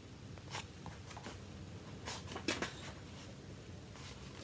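Faint rustles and soft taps of a paperback book being handled and lowered, a handful of short sounds spread over a couple of seconds, over a low steady room hum.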